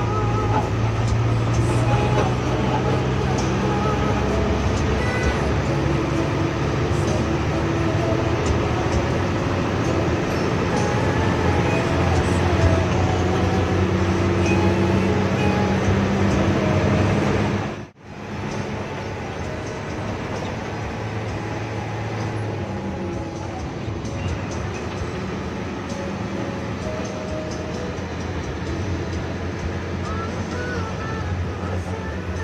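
Music with singing playing over a bus's cabin sound system, mixed with the bus engine and road noise inside the cabin. The sound drops out abruptly for a moment a little past halfway, then the engine and music carry on slightly quieter.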